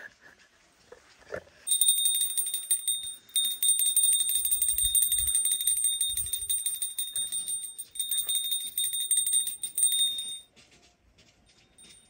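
A small metal hand bell rung rapidly and continuously for about eight seconds, in a fast stream of strikes at a high ringing pitch, with two short breaks.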